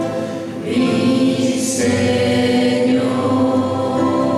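Mixed parish choir of men, women and girls singing a Spanish hymn, holding long sustained chords that shift a couple of times.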